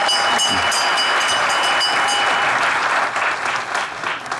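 Studio audience applauding. A bell rings over the applause for the first two and a half seconds or so, then stops.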